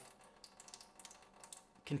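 Faint irregular clicking of the LifeSaver Jerrycan's push-button spout being pressed and twisted to lock it on for continuous flow, over a thin stream of filtered water trickling into a stainless steel sink.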